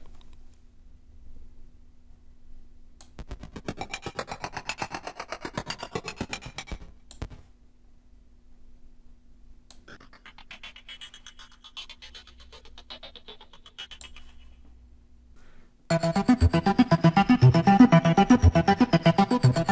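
Percussive arpeggiated synthesizer patterns from the Retrologue 2 soft synth (Dark Mass sounds), played alone: a fast run of ticking pulses about three seconds in, then a fainter ticking pattern after about ten seconds. At about sixteen seconds the arps play combined with the mid-arp sound, much louder and fuller.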